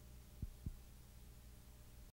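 Near silence with a faint steady low hum, broken by two soft low thumps about a quarter of a second apart, a little under half a second in.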